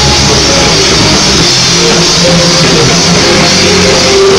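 A rock band playing live and very loud: electric bass and drum kit, with keyboard. The sound is dense and unbroken.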